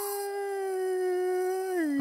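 A person's voice holding one long, steady open-mouthed 'aah' note that slides down in pitch near the end.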